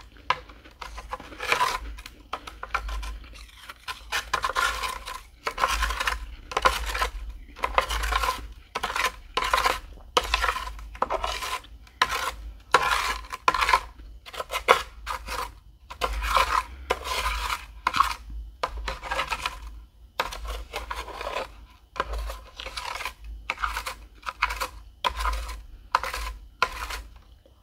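Metal spoon scraping and scooping through dry, flaky freezer frost on a tray, stroke after stroke in quick succession.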